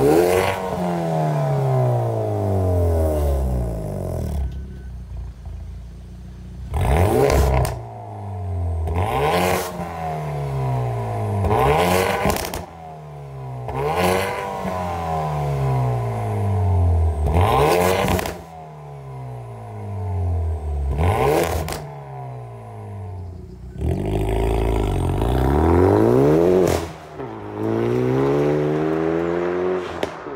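Hyundai i30N's turbocharged 2.0-litre four-cylinder revved repeatedly while standing still, through an RCP turbo-back exhaust, each blip climbing and then falling back toward idle. Several blips end in a sharp bang as the revs drop, and near the end the engine is held high for a few seconds before another rev.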